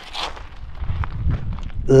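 Handling noise as a small catfish is unhooked from a fishing rig: faint rustles and scattered small clicks, with a low rumble from about a second in and a short grunt at the very end.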